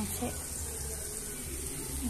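Ground spice paste frying in a wok, a steady sizzle, while a silicone spatula stirs it.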